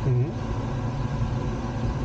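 Steady rushing airflow noise inside a glider's cockpit in flight, with a brief vocal sound about a second's fraction in at the start.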